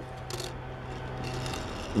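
Die-cast Hot Wheels car rolling across a wooden tabletop on hard plastic wheels: a faint, steady rolling whir, with a light click near the start.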